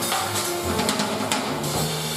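Jazz piano trio playing an instrumental passage: grand piano, upright double bass and drum kit with cymbals, the bass moving in held low notes under the piano.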